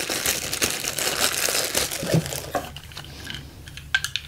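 Clear plastic bag crinkling as hands pull a small AC power adapter out of it, busy for about two and a half seconds and then quieter. A sharp click just before the end.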